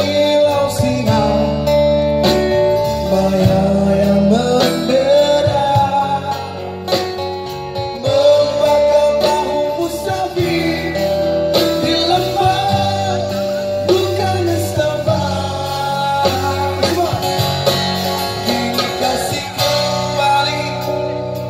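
Live amplified music: a slow, nostalgic song played on acoustic guitar through a PA, with a wavering sung melody line over sustained low accompaniment notes.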